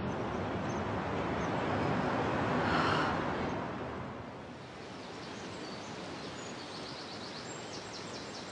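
Outdoor ambience: a steady rushing noise that swells about three seconds in and then fades, with faint birds chirping near the end.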